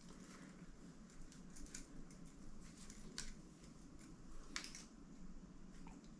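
Faint handling noise: a few soft clicks and rustles spaced roughly a second and a half apart, over quiet room tone.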